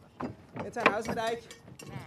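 Cattle hooves clattering and knocking on the wooden deck of a livestock ferry as the cows and calves step off, with one sharp knock a little under a second in. Faint human voices come in briefly.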